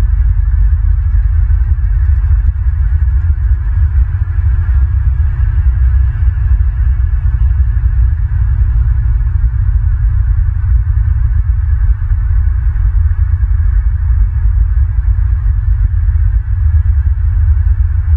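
Steady, loud low rumble and hum, with a faint even hiss higher up: the constant background noise of an outdoor nest-camera microphone.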